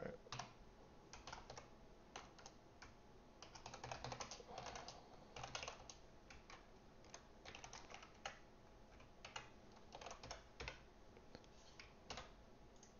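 Faint typing on a computer keyboard: irregular runs of keystrokes broken by short pauses.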